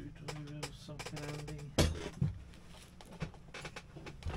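Rummaging through tools and objects: a run of small clicks and rattles, with a loud knock a little under two seconds in and a second one just after, under a man's low humming or muttering.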